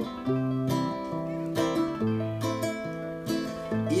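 Acoustic guitar strumming chords in the gap between sung lines, changing chord roughly every second or so; the voice comes back in at the very end.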